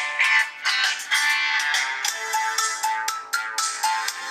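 A smartphone ringtone melody playing through the Cubot S200's built-in loudspeaker: a bright, thin tune of quick notes with no bass.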